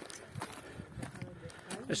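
Footsteps on a stony trail with the sharp clicks of Nordic walking pole tips striking the rocks, several times.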